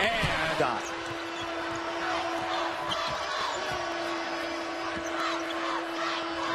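Basketball game sound: the ball being dribbled and sneakers squeaking on a hardwood court, over steady arena crowd noise with a constant tone running through it.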